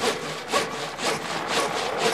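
A hand saw sawing through wood in quick, even strokes, about four a second, used as a sound effect in a break where the band drops out. It stands for "sawing logs", snoring, in a song about sleep.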